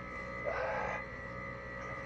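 Short hiss of an air-powered grease gun about half a second in, as grease is pumped into the first fitting, over a steady hum.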